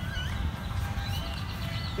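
Outdoor ambience: a steady low wind rumble on the microphone, with a few faint high chirping calls from a bird.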